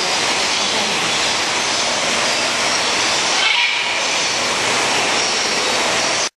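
A loud, steady rushing noise with no bird calls or voices in it.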